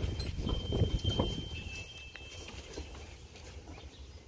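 Soft taps and knocks from crows hopping and pecking about on a metal mesh porch table and railing, mostly in the first second or so, then quieter.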